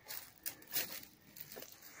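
Dry autumn leaves rustling softly in a few short, irregular crackling bursts.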